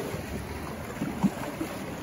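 Sea washing against the rocks, a steady wash with a soft low slap about a second in, and wind buffeting the microphone.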